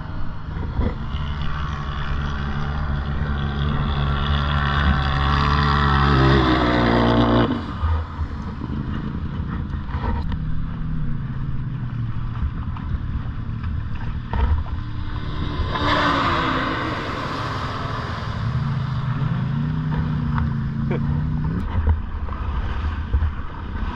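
ATV engine accelerating, its pitch climbing steadily for several seconds before the throttle closes about seven seconds in. It runs lower for a while, with a rush of noise a little after the middle, then revs up again near the end.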